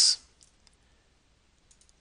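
Faint clicks of a computer mouse: one or two about half a second in, then a quick little cluster near the end.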